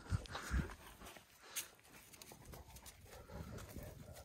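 Dogs moving over grass close by: faint rustling with a couple of soft thumps early on and one short tick about a second and a half in.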